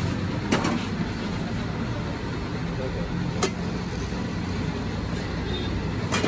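Steady street-traffic rumble with voices in the background, and two sharp clicks, about half a second in and about three and a half seconds in.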